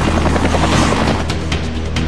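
Helicopter rotor beating steadily in flight, over background music.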